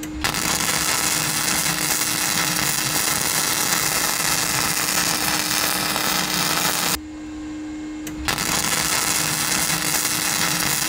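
Flux-core MIG welding arc from a Vevor MIG-200D3 on thin sheet steel: a steady sizzle that stops for about a second after seven seconds, then strikes up again. A steady low hum carries on through the pause.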